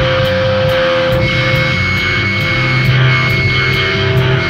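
Hardcore punk recording by a full band: heavily distorted electric guitar and bass over drums, with cymbals struck at an even pace of about two a second and a held, ringing guitar note.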